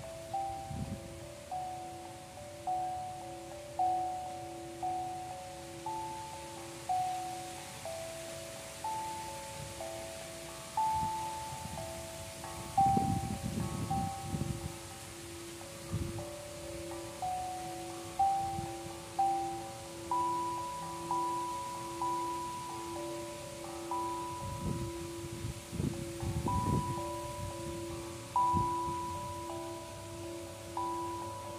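Sound bowls struck with a mallet about once a second, each strike ringing out at a different pitch over a steady, wavering hum. Low wind gusts rumble on the microphone a few times.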